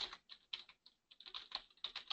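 Computer keyboard being typed on: a run of faint, irregular keystroke clicks.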